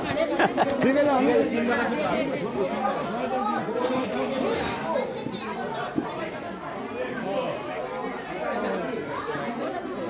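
Crowd chatter: many people talking at once in overlapping voices, a little louder in the first couple of seconds.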